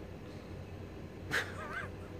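A sleeping domestic cat making a brief, high, wavering squeak in its sleep, just after a short breathy burst, over a faint steady room hum.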